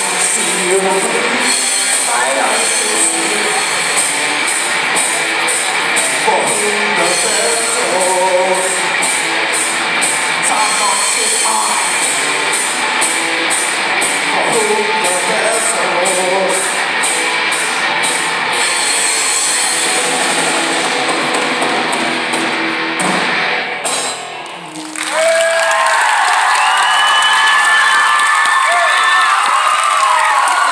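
Live rock band playing electric guitars and drums with a steady cymbal beat; the song winds down and stops about 24 seconds in. The audience then cheers and shouts.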